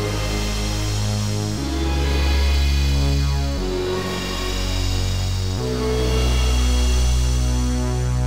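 Sampled major-triad chords played by an Octatrack sampler over a bass line, each chord held for about two seconds before the next. It is a progression reharmonized with major triads only, each set over a bass note that turns it into the needed minor, dominant or suspended chord.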